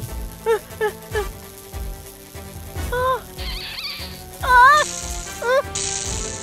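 Cartoon background music with short sliding comic notes and a wavering note, plus brief hissing bursts in the second half.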